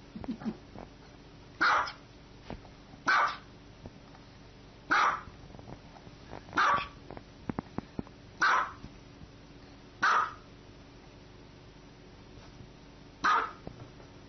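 A small dog barking seven times, single high-pitched barks spaced about a second and a half to two seconds apart, with a longer pause before the last one.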